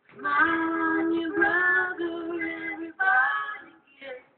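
A woman singing alone, with no instruments heard: one long phrase of held notes, then a shorter phrase near the end.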